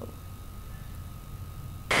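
A low steady hum with a faint thin steady tone above it, in a gap between voices; just before the end a loud amplified voice cuts in abruptly.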